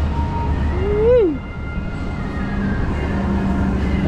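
A cat meows once about a second in: a short call that rises and then falls in pitch, over a steady low hum.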